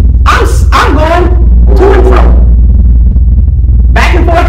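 A woman preacher's voice in a few short, loud phrases during the first half, then a pause, all over a constant low hum.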